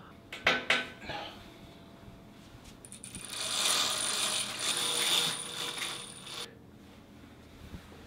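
A few sharp clicks, then a roller blind's bead chain pulled hand over hand through its clutch: a rattling, ratcheting run of about three and a half seconds that stops abruptly.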